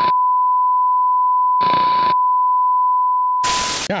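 A steady, high test-tone beep of the kind played over TV colour bars, used as a 'technical difficulties' edit. Short bursts of static hiss break in twice, about two seconds apart. A louder burst of static near the end cuts the tone off.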